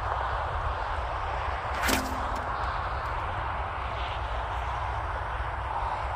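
Steady wind rumbling and buffeting on the microphone, with one sharp snap about two seconds in as a rock is thrown with a rope sling.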